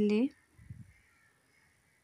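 A woman's spoken word ends in the first moment, then near quiet room tone.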